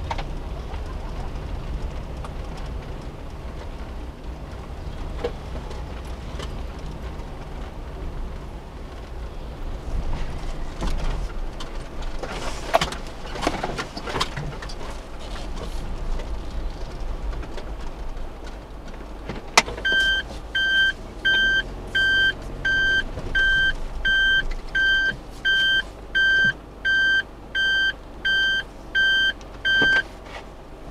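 Suzuki Every kei van moving slowly with a low steady engine and road rumble. About twenty seconds in there is a click, then a regular electronic beeping, about one and a half beeps a second, which is the van's reverse warning buzzer sounding while it backs up.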